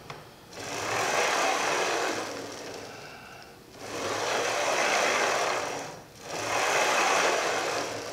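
A camera slider's 16 mm linear ball bearings rolling along copper tubing rails as the carriage is pushed back and forth: three passes, each a steady rolling noise that swells and fades, with short pauses where the direction changes.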